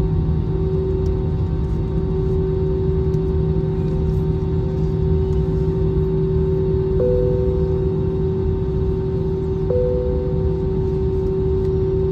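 Airliner cabin noise on the ground before takeoff: a steady low rumble and hum from the idling jet engines and cabin air system. About seven seconds in and again near ten seconds, a short higher tone sets in and fades.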